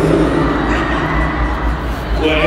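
Music playing over an arena's PA, heard muddy and boomy through a phone's microphone in a large hall, with a steady low rumble underneath.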